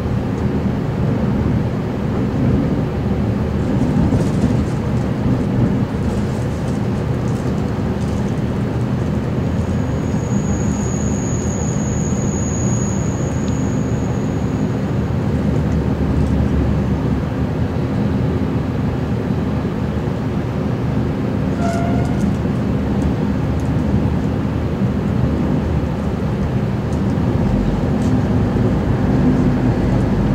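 Onboard running noise of a Vlocity diesel multiple unit: a steady engine and wheel-on-rail rumble. A thin high-pitched squeal lasts about five seconds, a third of the way in.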